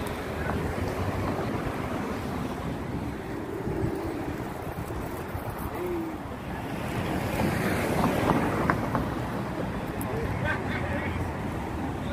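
Wind buffeting the microphone outdoors, a steady low rumble, with faint indistinct voices now and then.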